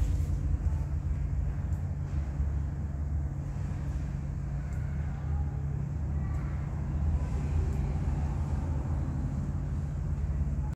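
Steady low hum with a fluctuating low rumble under it: background room noise in a large shed. The locomotive is cold and silent.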